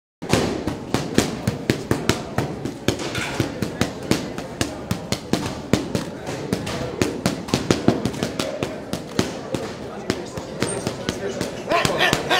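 Boxing gloves landing fast, irregular flurries of punches on focus mitts: sharp smacks, several a second, over background voices.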